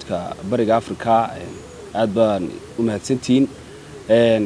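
A man's voice speaking in phrases with short pauses, answering an interview question.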